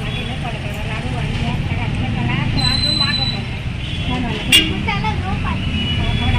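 Indistinct voices over a steady low rumble, with one short sharp click a little past the middle.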